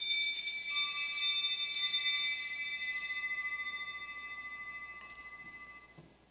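Altar bells rung at the elevation of the host during the consecration: a cluster of high, clear bell tones struck all at once, with more joining just under a second later, ringing on and slowly dying away over about five seconds.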